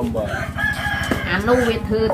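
A rooster crowing in the background, one held high note.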